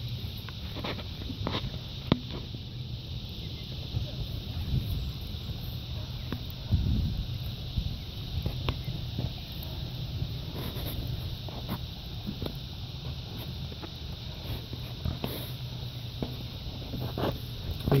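Wood and cardboard fire crackling: scattered sharp pops and ticks at irregular intervals from burning perforated cardboard on a campfire's embers, over a steady low rumble and a steady high hiss.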